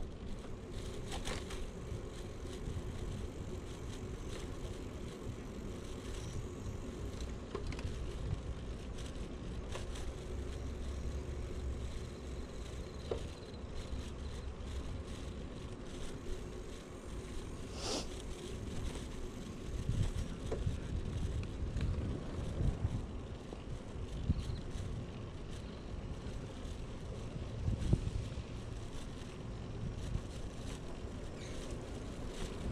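YouBike rental bicycle being ridden on a paved path: a steady low rumble of tyres and riding, with occasional sharp clicks and rattles from the bike. A few heavier bumps come in the second half.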